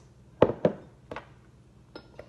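Glass hot sauce bottle knocking on a hard tabletop: a sharp knock about half a second in, a second close after it, and a lighter one a little after one second.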